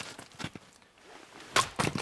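Wetterlings Backcountry Axe striking a five-inch log with a half swing and splitting it in one blow: a single sharp crack about a second and a half in, followed by a couple of quieter knocks.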